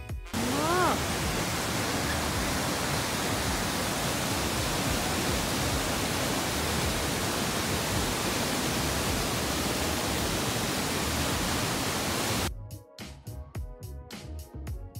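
Jōren Falls, a waterfall pouring into its plunge pool: a loud, steady rush of falling water that cuts off sharply near the end as music comes back in. About a second in there is one short rising, voice-like sound.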